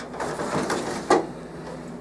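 Plastic hole-punch waste container sliding into its slot in a copier finisher, scraping along its rails and seating with one sharp knock about a second in.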